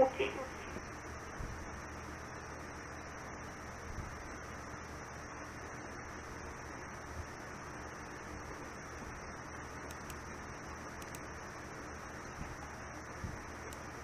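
Steady hiss and faint hum of an air traffic control radio feed with no one transmitting, after the last words of a transmission die away at the very start.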